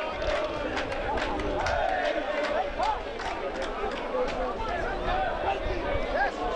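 Football crowd noise: many spectators chattering and shouting over one another, with players' calls from the pitch and a few sharp knocks.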